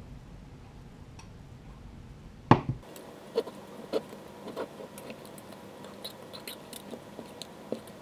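A thin utensil knocking and clicking against the glass of a mason jar packed with peppers in brine as it is worked down between the layers to release trapped air bubbles: one sharp knock about two and a half seconds in, then a run of lighter clicks.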